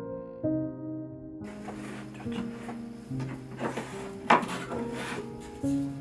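Gentle plucked-string background music, joined from about a second and a half in by wooden knocks and rubbing as a compartmented wooden tray is handled and set down on a table, the loudest knock a little past the middle.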